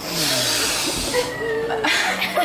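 Two people sniffing hard at a bouquet of flowers: a long, loud inhale through the nose lasting about a second, followed by a voice starting to laugh near the end.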